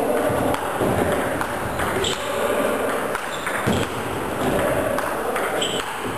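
Table tennis rally: a celluloid ball clicking sharply off the bats and bouncing on the table, several hits about a second apart.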